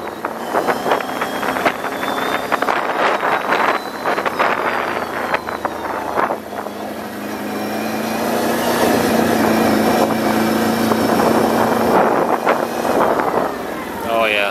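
Can-Am Outlander 1000 ATV's V-twin engine pulling the quad along under throttle, with wind buffeting the microphone. About halfway in, the engine note comes up louder and holds steady as it accelerates.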